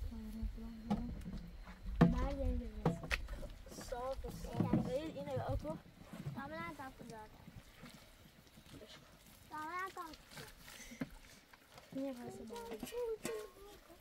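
Children talking in short, high-pitched bursts, with a few sharp knocks in the first few seconds.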